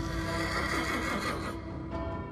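A horse whinnies once as it rears, the call lasting about a second and a half. Background music with steady held tones runs beneath it.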